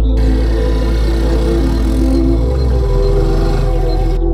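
A motorcycle engine running, with road and wind noise, as it is ridden along a road, heard over background music.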